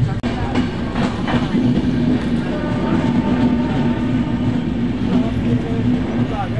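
Passenger train running, heard from inside the coach through an open barred window: a steady rumble of wheels on rail with a low hum, and a few sharp clicks in the first second or so.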